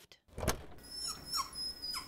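A single sharp knock, then a dachshund whining in a thin, high-pitched tone for about a second.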